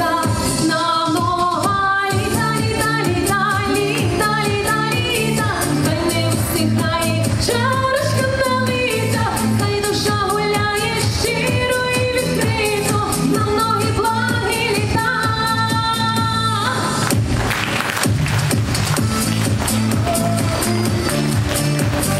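A woman singing a pop song live over a backing track with a steady beat. Her singing stops about seventeen seconds in, and the backing track plays on without a voice.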